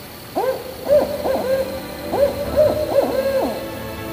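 Owl calling: a quick run of about eight short hoots, each rising and falling in pitch, starting about half a second in.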